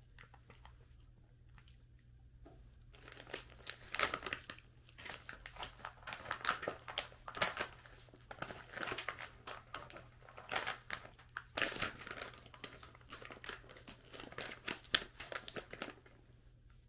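Plastic dog-treat pouch crinkling and rustling in irregular bursts as hands dig treats out of it, starting about two and a half seconds in and going on almost to the end.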